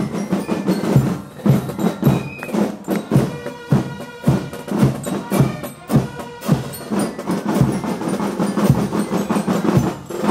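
Marching band drums playing a steady marching beat, with sharp strikes at an even pace throughout.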